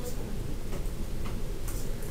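Classroom room tone: a low steady rumble with a few faint ticks.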